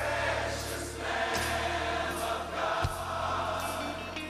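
Gospel music sung by a choir with instrumental accompaniment: several voices over a sustained low bass, with a sharp hit about a second and a half in and another near the three-second mark.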